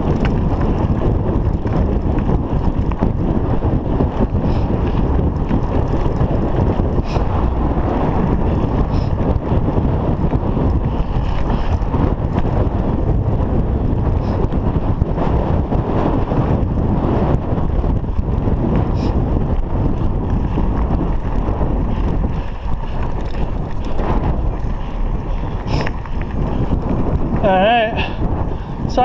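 Wind buffeting the camera microphone and mountain-bike tyres rolling over a dirt road make a steady rumble, with occasional faint clicks. A voice comes in just before the end.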